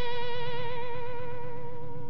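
Closing note of a rock song: one guitar note held with a wavering vibrato, slowly dying away.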